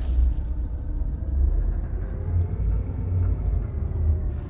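Deep, steady rumble of a title-animation sound effect, with a few faint crackles over it.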